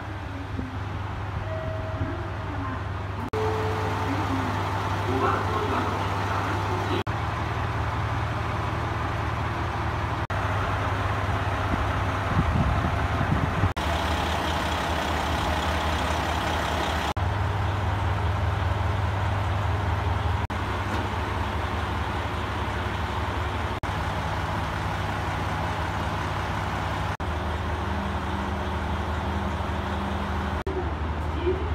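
Diesel railcar engine idling while the train stands in the station, a steady low hum. A brief louder rumble comes about twelve seconds in, and faint voices are heard in the first few seconds.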